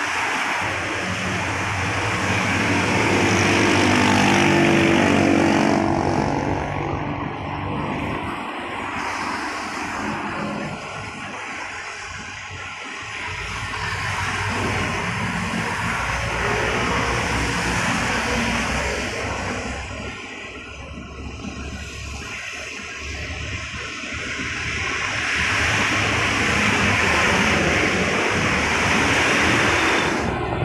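Road traffic passing on a wet road: tyre hiss and the engines of cars and vans swell and fade as each one goes by. It is loudest a few seconds in, again about halfway through and near the end, with an engine's pitch rising in the first few seconds.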